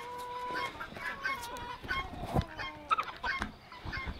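Backyard poultry calling in short, steady-pitched notes, with rustling and a few knocks as a domestic goose is picked up and held against a jacket.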